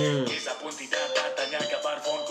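Malaysian hip-hop track: a male voice rapping in Malay over a beat.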